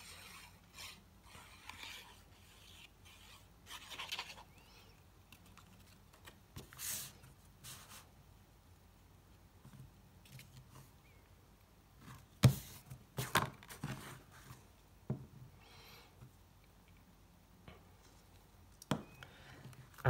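Paper and card stock being handled while a border strip is pressed onto a card: intermittent rustles, slides and light scrapes of paper, with a few sharp taps about two-thirds of the way through.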